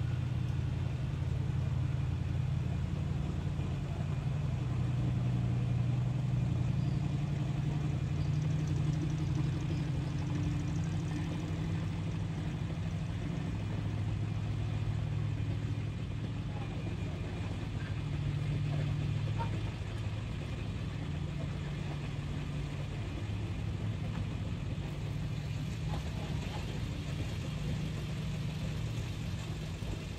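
Steady low hum of slow-moving vehicle engines as the flower-covered parade floats and an escort pickup truck pass.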